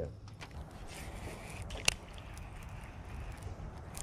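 Low, steady background noise with one sharp click about two seconds in.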